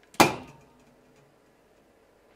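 A heated drink can, full of steam, plunged upside down into cold water and imploding with one sharp, loud crack that dies away quickly: the steam inside condenses and air pressure crushes the can flat.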